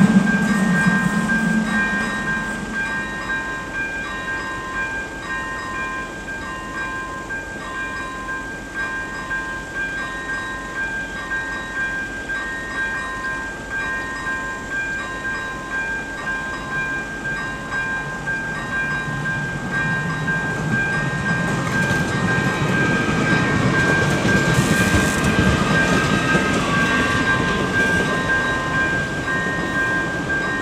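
Level-crossing electronic warning bells (ZV-01 + ZV-02) ringing: a steady electronic tone with pulsed tones repeating about every second and a half. A passing train's rumble fades away in the first couple of seconds, and a low rumble builds again in the second half.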